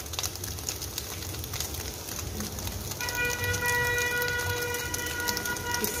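Paneer cubes sizzling softly as they fry in butter in a kadhai. About halfway through, a steady horn-like tone with several overtones sounds for about three seconds.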